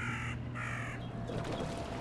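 A bird giving two short, harsh calls in the first second, over a low steady hum that fades out a little past the middle.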